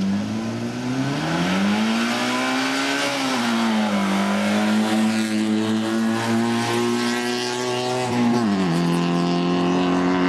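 Small hatchback rally car's engine launching hard from a standing start and accelerating away at full throttle. Its pitch climbs, then drops sharply about three seconds in and again about eight and a half seconds in as it shifts up a gear, and climbs again after each shift.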